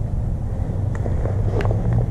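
A steady low mechanical hum, with a few faint clicks about a second in and again about half a second later.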